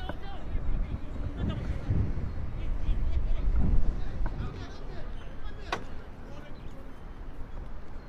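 Field sound of a football match: distant shouts and voices over a fluctuating low rumble, with one sharp knock about six seconds in.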